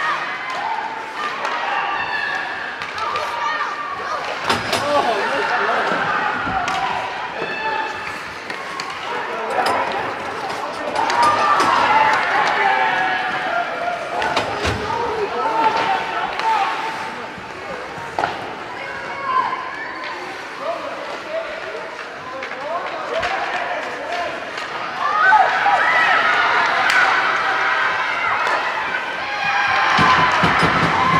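Ice hockey game sounds: spectators' voices shouting and calling out, with sharp knocks of pucks and sticks against the boards. The shouting swells near the end as play reaches the net.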